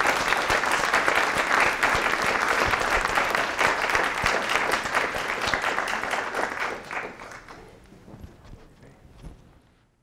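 Audience applauding, many hands clapping together, then dying away from about seven seconds in.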